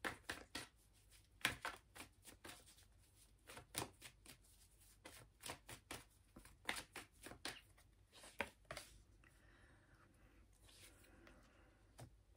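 Tarot cards being shuffled by hand: a faint run of short, irregular card clicks and snaps that stops about nine seconds in.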